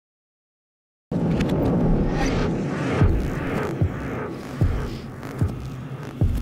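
Film soundtrack sound design that starts about a second in: a low droning hum with a deep thud repeating about every 0.8 s, like a slow heartbeat.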